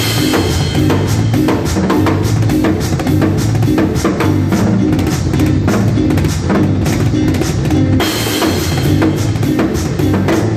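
Drum kit and electric bass playing a cumbia groove together: busy, steady drumming over a moving bass line, with a cymbal crash at the start and another about eight seconds in.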